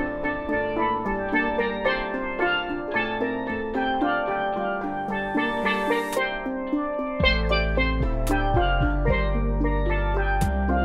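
Steel pans (a double tenor pan and a single tenor lead pan) playing a fast melody in rapid struck notes. A rising swell ends in a crash about six seconds in, and deep bass notes join about a second later.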